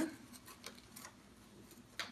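Faint, scattered clicks and light handling noise from hands working the mattress's Velcro tabs through holes in a travel crib's bottom fabric, with one sharper click near the end.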